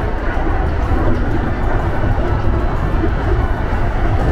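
Electric local train running on the line, heard from inside the car: a steady rumble of wheels on the rails and running gear, with no breaks.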